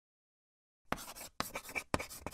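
Chalk writing on a chalkboard: silence, then from about a second in a run of short scratchy strokes, each starting with a sharp tap of the chalk.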